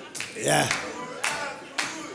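Single sharp hand claps, about two a second, with a brief voice sounding about half a second in.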